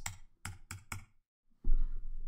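Computer keyboard keystrokes: about six quick taps in the first second as a phone number is typed, then a pause. Near the end comes a loud, low thud with a short rumble.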